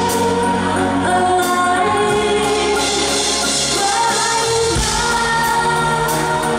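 A female lead singer singing a pop ballad live into a handheld microphone, holding long notes, over a live band of keyboard and drums with a backing singer.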